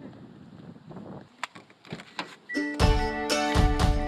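A few faint handling sounds and sharp clicks, then background music with a steady beat starts suddenly about three quarters of the way in and becomes the loudest sound.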